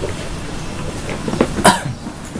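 A person coughing once, a short sharp cough about one and a half seconds in.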